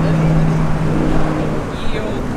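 A steady low engine hum that stops near the end.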